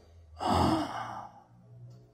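A man's single breathy sigh into a handheld microphone, about half a second in, lasting about a second and fading out.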